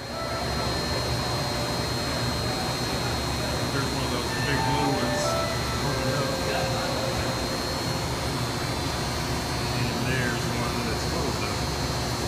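Steady low hum of air handling in an enclosed indoor butterfly garden, with a thin high whine running above it.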